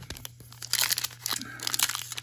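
Foil wrapper of an Upper Deck Artifacts hockey card pack crinkling as it is handled, a dense run of crackles starting just under a second in.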